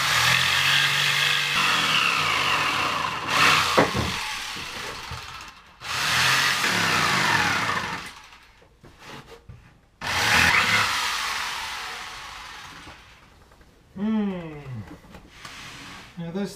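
Handheld circular saw trimming the edge of a marine plywood panel in three short cuts, at the start, about six seconds in and about ten seconds in. Each cut ends with the motor winding down in pitch.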